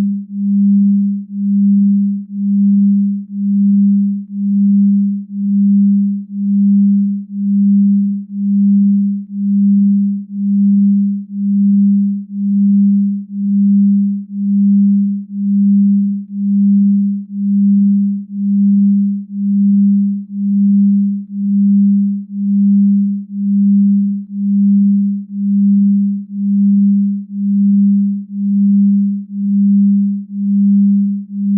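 A low, pure binaural-beat brainwave tone, set for 6.8 Hz theta waves, swelling and fading evenly about once a second.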